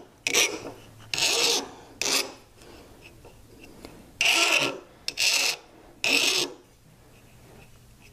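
Hand file rasping across the tip of a jeweller's burnisher in six short strokes, with a pause of about two seconds midway. The file is blunting the burnisher's very sharp point so that it won't snag on the bezel metal or the stone.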